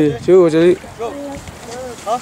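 People talking: short stretches of conversational speech, with brief pauses between phrases.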